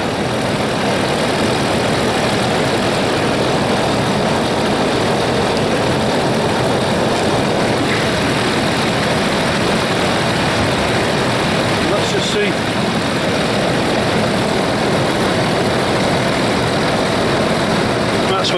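Land Rover Discovery 3's 2.7-litre V6 diesel engine idling steadily, just after being jump-started from a completely flat battery, heard from under the open bonnet.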